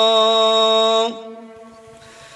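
A man's voice chanting Arabic sermon verses through a PA microphone, holding one long, steady note that stops about a second in. A faint trailing sound follows.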